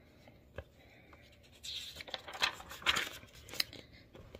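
Pages of a picture book being turned by hand: a single light tap, then about two seconds of soft paper rustling with a few sharper crackles as the page is turned over.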